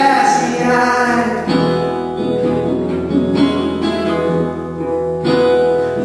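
A man singing live to his own strummed resonator guitar: a held sung note in the first second or so, then ringing strummed chords, restruck about a second and a half in and again near the end.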